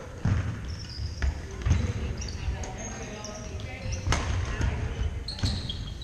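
Badminton being played on a hardwood gym floor: sharp hits and low thuds every second or so, with short high shoe squeaks, echoing in the large hall.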